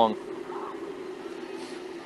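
The end of an announcer's word at the very start, then a steady low hum under faint background noise in the radio broadcast feed.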